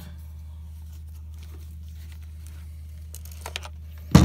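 Faint handling noise of a camera and lens, a few soft clicks and rustles, most of them in the last second or so, over a steady low hum.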